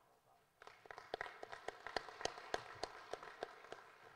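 Light applause from a few people clapping: distinct hand claps start about half a second in and carry on steadily, thinning out near the end.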